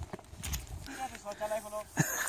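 A faint, distant human voice calling out for about a second, starting about a second in, with a few soft thumps just before it.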